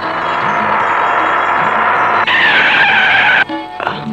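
A car driving, its road noise steady, then tyres screeching for about a second under hard braking, a slightly falling squeal, as the vehicle is brought to a stop.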